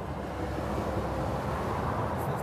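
Motorway traffic passing at speed: a steady rush of tyres and engines from lorries and vans going by, swelling slightly towards the end.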